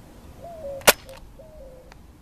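A single sharp gunshot crack about a second in, the bullet striking the gunslinger.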